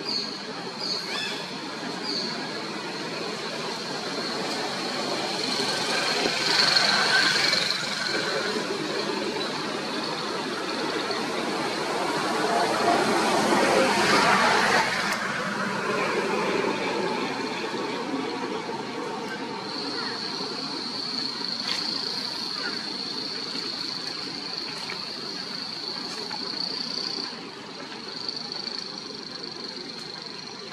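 Outdoor background noise: a steady high-pitched drone over a broad hiss that swells twice, around 7 and 14 seconds in, with faint voices.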